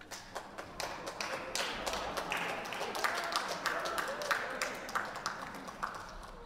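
Audience applauding, starting right at the outset and building into steady clapping, with a few voices calling out in the middle.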